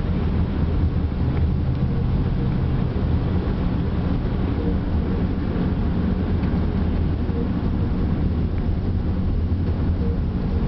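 Steady low rumble of a car's engine and tyres heard from inside the cabin while driving slowly in heavy freeway traffic.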